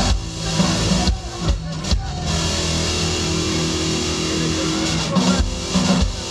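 Live rock band playing: electric guitars, electric bass and drum kit. Drum hits come in the first two seconds and again near the end, with held guitar notes ringing through the middle.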